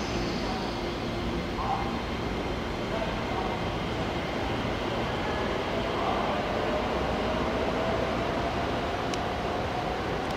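JNR 489 series electric train running past close by: a steady rumble of wheels on rail, with a motor whine that slowly rises in pitch through the second half.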